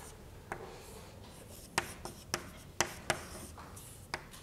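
Chalk on a blackboard as an equation is written: about five sharp taps of the chalk, with faint scratching strokes between them.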